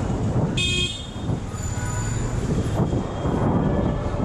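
Motorcycle riding with steady engine and road rumble, and one short horn toot about half a second in.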